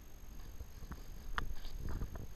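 Footsteps crunching along a path through dry scrub, about two steps a second, with brush rustling against the walker.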